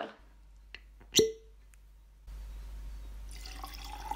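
A single sharp water-drop plink with a short ring, a little after a second in, followed from about halfway by a steady low hiss.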